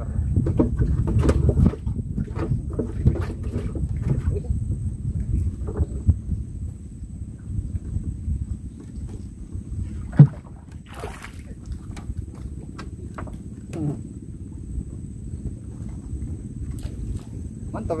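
Small wooden boat being paddled on an estuary: a low steady rumble of water and movement around the hull, with one sharp loud knock about ten seconds in and a thin steady high tone throughout.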